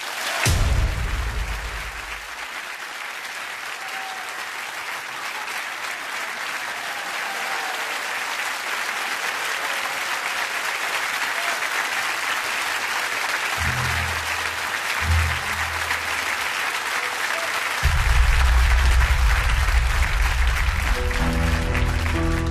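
Studio audience applauding steadily. Deep notes of the song's introduction come in under the clapping about two-thirds of the way through, and higher instrument notes begin near the end.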